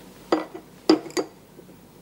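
A drinking glass of water clinking three times, short sharp knocks: one near the start and two close together about a second in.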